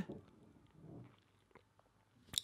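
Near silence: room tone, with a faint, brief low sound about a second in.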